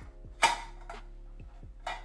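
Two sharp clicks about a second and a half apart, the first much the louder, from handling a utility lighter and a clear plastic breeder box while heating the box's corners.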